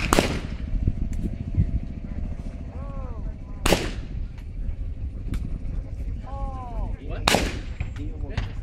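Shotgun shots on a trap field, three sharp reports about three and a half seconds apart, each of the later two preceded by a short shouted call from the shooter.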